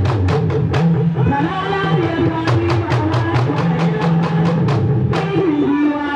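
Drum music with rapid, sharp drum strikes, about five a second in the middle stretch, over a continuous pitched melody line that bends up and down.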